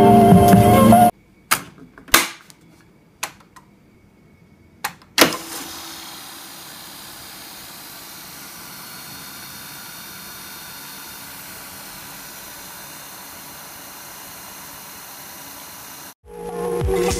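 Intro music cuts off about a second in. Several sharp clicks follow as cassettes are loaded and keys pressed on a multi-cassette tape duplicator. Then the duplicator runs with a steady low hum and hiss while copying the tape.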